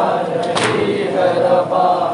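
A group of men chanting a noha together in a slow, mournful line, with one sharp slap about half a second in. The slap is matam, chest-beating that keeps time with the lament.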